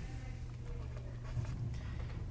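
A stylus writing on a pen tablet, faint, over a steady low hum.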